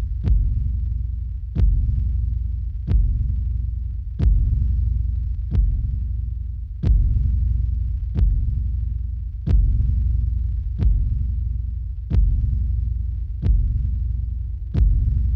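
Slow, regular deep booms, about one every 1.3 seconds, each a sharp hit that fades into a low rumble over a steady low drone: a dramatic pulsing sound effect.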